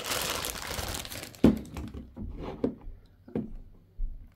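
Clear plastic packaging bag crinkling and rustling as a radio is slid out of it, dying away about a second and a half in. A sharp thump follows, then a few light handling knocks.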